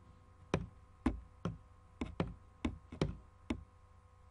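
About eight sharp, irregularly spaced clicks at a computer, made by a mouse or keys being pressed repeatedly.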